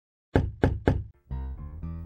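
Three quick knocks in a row, then music starts with a low bass line.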